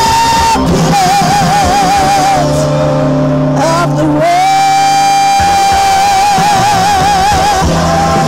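A woman singing live into a handheld microphone over instrumental accompaniment, holding long notes with vibrato. One long note begins about four seconds in and is held almost to the end, wavering more as it goes.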